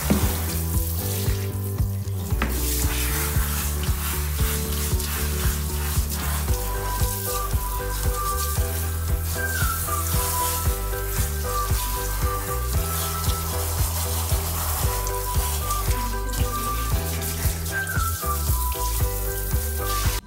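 Handheld shower head spraying water onto a small dog's coat, a steady hiss.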